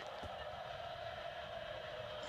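A faint, steady background hum, with one soft tap shortly after the start.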